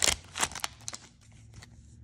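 Foil trading-card pack wrapper crinkling as it is pulled open, with a burst of sharp crackles in the first half second or so, then a few faint clicks as the stack of cards is handled.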